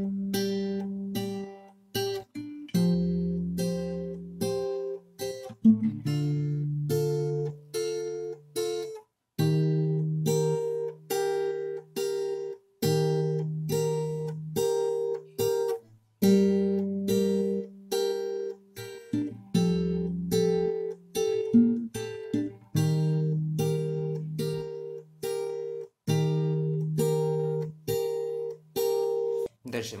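Acoustic guitar played fingerstyle: plucked treble notes over a moving bass line, a short phrase of about three seconds played over and over with brief breaks between repeats.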